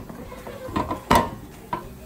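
Cosori air fryer basket pulled out of its drawer: plastic sliding and rattling, with a sharp clack a little over a second in.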